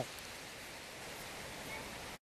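Faint, steady outdoor background noise: an even hiss with no distinct events.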